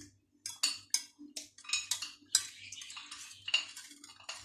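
Wire whisk stirring milk and cream in a stainless steel saucepan, its wires scraping and clinking against the pan in quick, irregular strokes.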